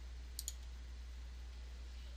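Computer mouse button clicked, two sharp clicks in quick succession about half a second in, over a steady low hum.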